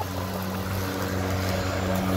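An engine running with a steady low hum that slowly grows louder.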